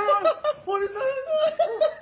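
A man crying out in short, repeated yells and groans, mixed with laughter.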